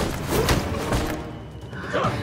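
Dramatic background music under a staged sword-and-fist fight, with several sharp hit effects in the first second and short shouts or grunts from the fighters.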